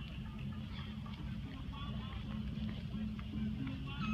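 Steady low rumble of wind and movement noise on a handheld camera's microphone as it is carried along, with faint voices in the distance.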